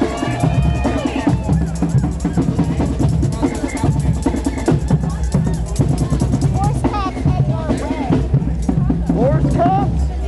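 Drums beating among a marching crowd, with crowd voices and a few shouts over the drumming.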